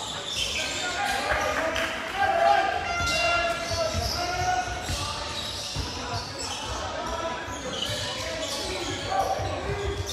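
Basketball bouncing on a hardwood court during a game, with players' and coaches' shouts, all echoing in a large sports hall.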